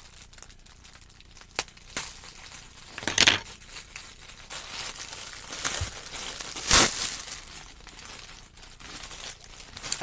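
Shipping packaging crinkling and rustling as packages are rummaged through, with several sharp louder crackles, the loudest about seven seconds in.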